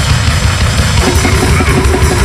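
Loud, fast grindcore/powerviolence band recording dominated by rapid, dense drum kit playing with a heavy bass drum; about a second in the drum strikes become quicker and more distinct.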